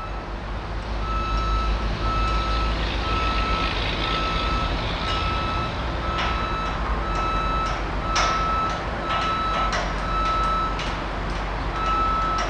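Backup alarm on heavy construction equipment beeping steadily at about one beep a second, over the continuous low rumble of a diesel engine, with a few short knocks in the second half.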